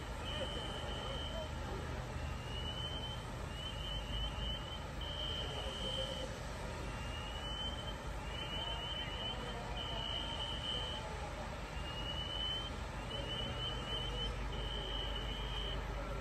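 An electronic alarm repeats a cycle about every five seconds: a rising sweep, a quick run of chirps, then a steady high tone for about a second. Under it runs the steady low rumble of fire truck engines.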